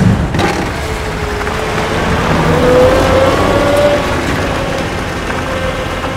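Dirt bike engine running and revving: its pitch climbs about halfway through, then eases off.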